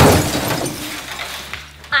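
A crash like glass shattering, loudest at the very start and dying away over about a second and a half.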